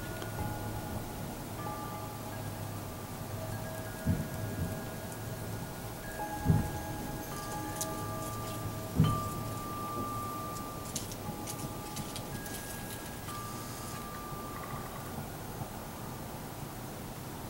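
Wind chimes ringing: several clear tones at different pitches, each held for a second or more and overlapping. Three low bumps come about four, six and a half and nine seconds in.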